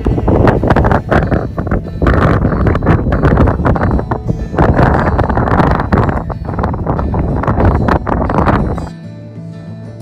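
Strong gusty wind blowing across the microphone, laid over acoustic guitar music. The wind noise cuts off sharply about nine seconds in, leaving the guitar alone.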